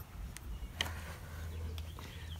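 Quiet outdoor background with a few faint clicks from hands handling and pressing a small stick-on blind spot mirror onto a car's side mirror glass, and a faint low rumble for about a second from the middle.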